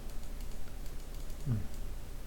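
Faint, rapid light clicks and taps from computer input at a desk, over a low steady hum. A man gives a short 'mm' about one and a half seconds in.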